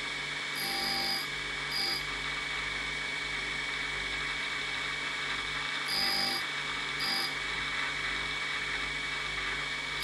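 Tool-and-cutter grinder running with a steady whine while a high-speed-steel tool bit is passed against its cup wheel to grind the top rake. Short grinding contacts come in pairs, one pair about a second in and another just past the middle.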